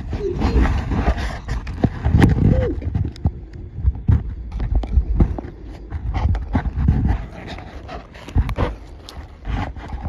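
A beaver nosing and rubbing right against the microphone: fur brushing and irregular thumps and clicks, with one short whine a little over two seconds in.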